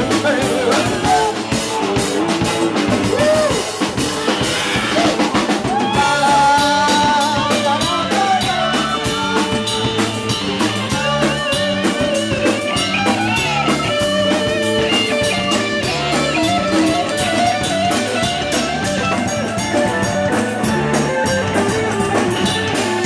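Live rock band playing: electric guitar over a steady drum-kit beat, with a lead melody line that bends in pitch in the middle stretch.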